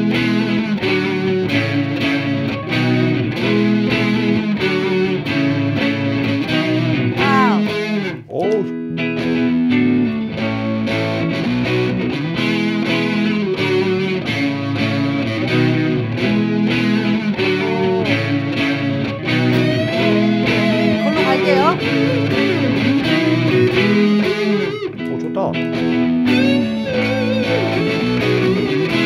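Electric guitar playing through a Valeton Dapper Looper Mini looper pedal: a recorded rhythm part repeats while lead lines are played over it, with string bends about seven seconds in and again past twenty seconds.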